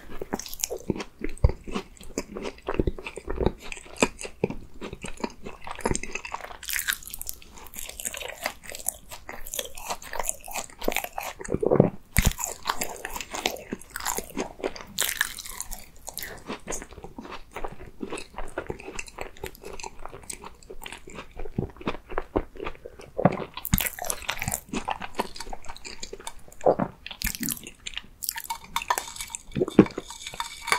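Close-miked biting and chewing of a strawberry cream tart: the crisp pastry shell crunches and crackles irregularly between soft, wet chewing of the cream.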